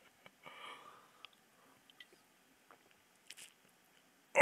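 Near silence: a faint breath about half a second in, then a few tiny faint clicks.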